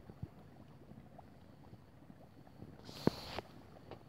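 Faint water moving around a kayak in a shallow, muddy brook, with one short splash about three seconds in.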